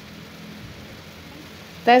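Chopped chillies, tomatoes and shallots simmering in a little oil and water in a silver wok, with a steady, soft sizzling hiss.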